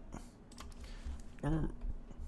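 Typing on a computer keyboard: a quick, uneven run of key clicks as a search is entered.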